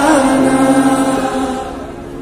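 Live pop music: a male singer holds one long sung note over piano accompaniment, the sound dying away near the end.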